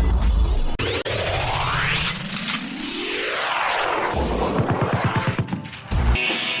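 Electronic intro sound effects: a deep boom, then sweeping tones gliding up and down, a second boom about four seconds in, and a run of pulses coming faster and faster before a last boom.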